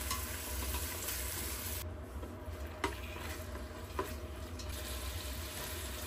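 Sliced pork frying in oil in a stainless steel pot, a steady sizzle as it is stirred with wooden chopsticks, with a couple of light clicks partway through.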